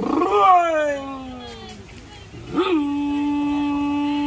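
A voice singing out long calls: one that rises and slides slowly down, then, about two and a half seconds in, a call that rises and settles into a long held note. It is a coconut climber's singing signal that someone is up the palm, warning those below of falling coconuts.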